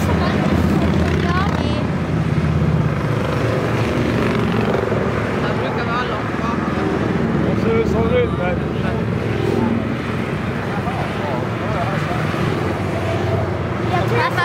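A long procession of motorcycles riding past one after another, their engines making a steady, loud drone, with people talking nearby.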